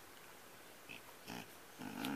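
A young dog making a few short, faint breathy noises as it stands with its paws up against the bed, a small one about a second in and a louder one near the end.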